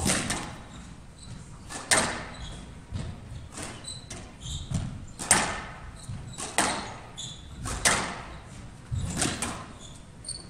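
Squash rally: the ball is struck by rackets and hits the court walls, sharp hits about every one to one and a half seconds in a large hall.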